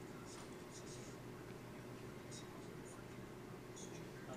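Quiet indoor room tone: a steady low hum with a few faint, short ticks and scratches scattered through it.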